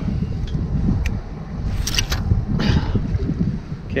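Wind buffeting the microphone in a steady low rumble, with a few short splashing sounds of water at the kayak about two to three seconds in.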